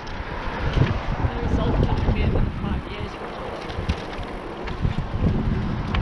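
Wind buffeting the microphone of a bike-mounted camera while riding, uneven low gusts over a steady hiss of tyres on the road.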